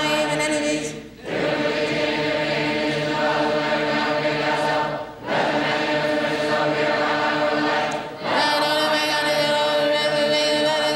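A group of voices chanting in unison on long held pitches, breaking off briefly for breath about every three to four seconds.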